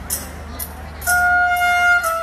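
Live mor lam band music: a light beat ticking about twice a second, then about a second in a loud held high note comes in and carries on.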